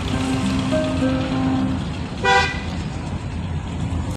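A vehicle horn gives one short toot about two seconds in, over the steady rumble of road and engine noise heard from inside a moving car.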